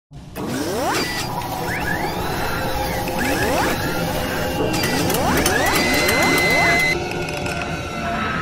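Logo-animation sound effects: mechanical whirring and clicking with three rising sweeps, about a second in, midway and near six seconds, over a steady synthetic background.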